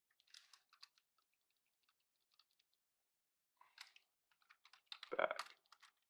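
Computer keyboard typing: faint, scattered key clicks in short runs, with a denser, louder patch near the end.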